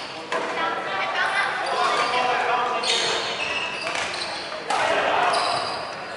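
Rubber dodgeballs bouncing and striking a wooden sports-hall floor again and again, mixed with voices in the large hall.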